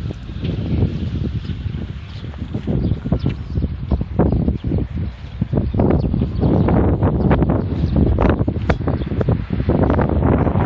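Wind buffeting a smartphone's microphone, a loud, gusty low rumble that rises and falls unevenly.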